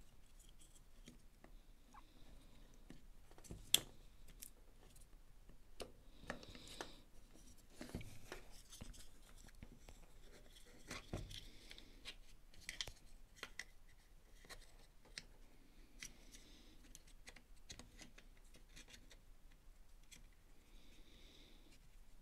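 Faint, scattered clicks and rustles of plastic parts and wire leads being handled and pressed into place in a cordless drill's plastic housing, with one sharper click about four seconds in.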